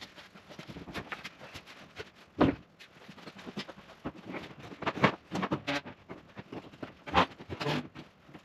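Handling noise of a heavy ¾-inch plywood sheet being carried up a stepladder onto a metal rolling scaffold and lifted against the wall: irregular knocks, bumps and scrapes of the panel, ladder and scaffold, with footsteps on the rungs and the scaffold deck. The loudest thump comes about two and a half seconds in.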